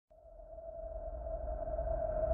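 Synthesized intro sound effect: a single steady mid-pitched tone over a low rumble, swelling in from silence.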